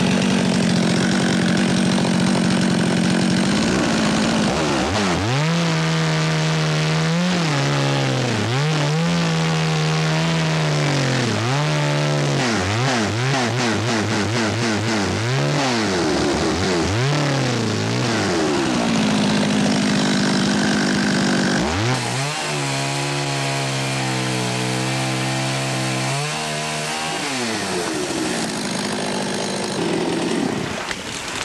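Chainsaw cutting into a dead white pine trunk to make the hinge for a felling cut: the engine runs at high revs, its pitch dipping and recovering every second or two as the chain bites into the wood, then drops back near the end.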